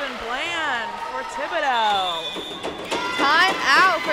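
Several high voices shouting and cheering at once as a volleyball point is won, with calls rising and falling over each other and loudest near the end.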